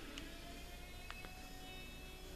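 Quiet room tone with a faint steady hum and a couple of faint ticks from a plastic zip-top bag being handled.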